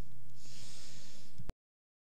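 Steady electrical hum on the microphone line, with a breathy exhale or sigh into the mic starting about half a second in. The audio cuts off abruptly to dead silence about one and a half seconds in.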